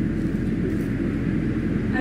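Steady low rumble of outdoor background noise, even in level, with no distinct events.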